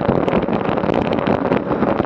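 Wind buffeting the microphone of a bike-mounted action camera at about 27 mph, with road-bike tyres running on asphalt: a loud, steady rush broken by many short crackles.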